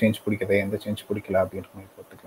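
A man speaking over a video call, in short phrases that trail off near the end.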